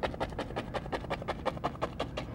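Oil-paint fan brush tapped firmly and rapidly against a stretched canvas on an easel to build a tree trunk: a fast, even run of soft taps, roughly eight to ten a second.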